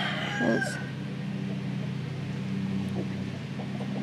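A rooster crowing; the crow ends within the first second. A steady low hum runs underneath.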